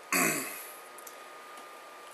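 A man clears his throat once, briefly, just after the start: a short noisy sound whose pitch falls away. Quiet room tone follows.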